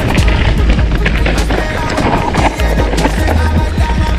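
Background music with a steady bass line, over the rattle and clatter of a mountain bike rolling fast down a rocky dirt trail.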